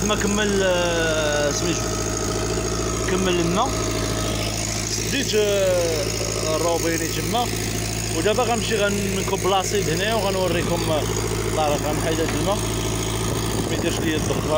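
Engine-driven irrigation pump running steadily, drawing fertilizer solution from a barrel through a suction hose. Intermittent voices sound over it.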